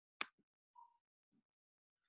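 A single sharp click about a fifth of a second in, the click that advances the presentation slide; otherwise near silence.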